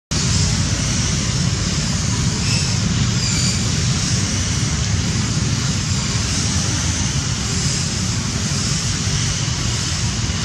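Steady outdoor background noise: a low rumble under a constant hiss, with no distinct events.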